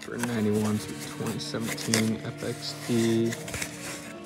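A man's voice in drawn-out syllables, with the rustle of a cardboard parts box and paper being handled.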